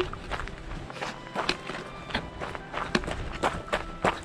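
Footsteps on a gravel path played back at high speed: a quick, irregular run of short scuffs.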